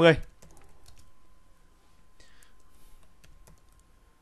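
Faint typing and clicking on a computer keyboard, scattered keystrokes as a stock ticker symbol is keyed into charting software, over a faint steady high hum.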